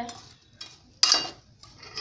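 A spoon stirring lumps of jaggery in water in a metal pot to melt them into syrup, knocking against the pot once about a second in with a sharp clink that rings briefly.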